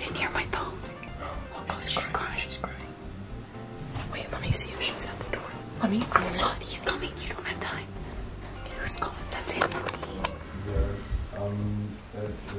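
Hushed whispering from two people, over quiet background music.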